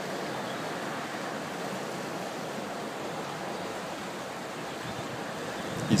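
Steady rushing of water churning at a canal lock gate: an even, unbroken noise with no pitch.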